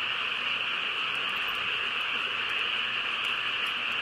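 Steady, unbroken high-pitched drone of a chorus of calling animals.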